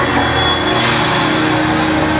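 Live band playing a dense instrumental passage, with steady held bass notes under guitar and conga drums.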